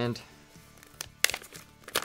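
Sealed product packaging handled and pulled at by hand, crinkling in a few short, sharp bursts about a second in and again near the end; the seal holds.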